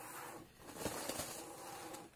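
Faint handling noise of a cardboard box being opened: the lid lifted and the packing inside rustling, with a few light scrapes around the middle.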